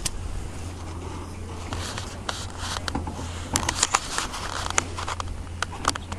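Irregular sharp clicks and scrapes close to the microphone, clustering from about two seconds in, over a steady low rumble. This is handling and water noise on board a kayak.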